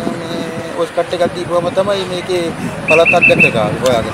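A man talking, with a quick run of four short high-pitched notes about three seconds in.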